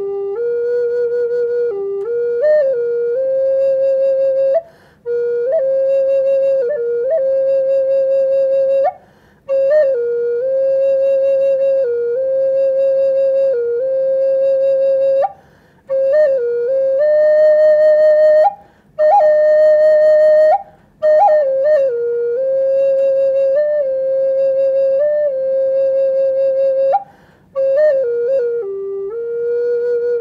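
Wooden Native American flute playing a slow melody: long held notes joined by short ornamented turns, in phrases broken by brief pauses for breath.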